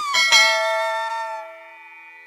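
Subscribe-button animation sound effect: quick clicks, then a bell chime that rings and fades away over about a second and a half.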